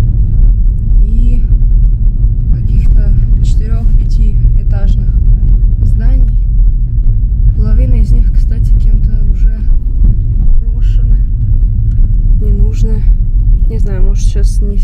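Steady low rumble of a car driving, heard from inside the cabin, with voices talking now and then over it.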